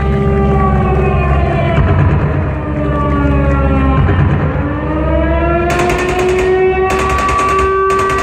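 Runway soundtrack over the venue's speakers: a siren-like wail that glides down and then back up over a steady low drone, with a harsh hissing layer coming in near six seconds.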